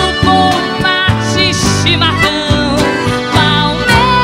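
Live band music: acoustic guitar and bass playing under a woman's sustained singing with vibrato.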